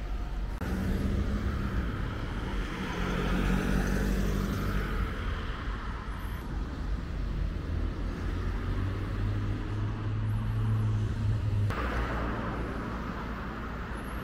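Road traffic on a town street: motor vehicles driving by, with engine hum and tyre noise.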